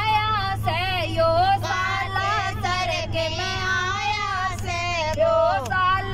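A woman singing a Haryanvi devotional bhajan to Balaji into a microphone, her high voice sliding and wavering through the melody. A steady low drone of the moving bus runs beneath.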